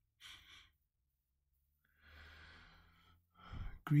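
A man breathing audibly before he speaks: a short breath near the start, a longer exhale like a sigh about two seconds in, and a quick breath in just before his first words.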